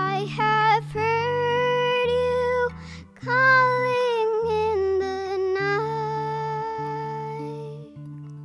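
A girl singing in long held notes to her own acoustic guitar accompaniment.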